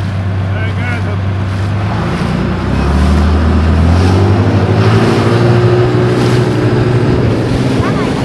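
Speedboat engine running low and steady, then revving up about two seconds in as the boat accelerates, its pitch rising over a few seconds and holding higher. Wind and rushing water come with it.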